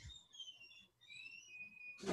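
Faint bird chirping: two runs of short high whistled notes, several falling in pitch, the second run ending on a longer held note.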